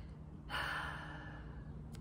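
A woman's breathy sigh: one exhale about a second long, starting about half a second in.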